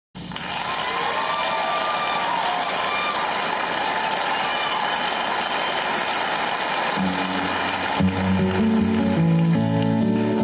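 Live audience applause and cheering, then a guitar starts playing about seven seconds in, with lower notes joining a second later.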